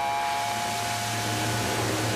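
Steam locomotive venting steam at track level: a steady hiss with a low rumble underneath.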